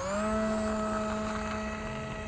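Small brushless electric motor driving a three-bladed pusher propeller on a foam RC glider: a whine that rises briefly as it spins up, then holds steady. The motor does not give the model enough thrust to take off from the grass.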